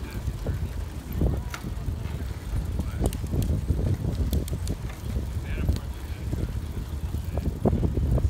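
Wind rumbling on the microphone during a bicycle ride, with a few light clicks and ticks scattered through it.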